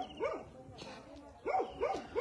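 A dog barking in short, quick barks: a couple at the start, then a run of three about a second and a half in.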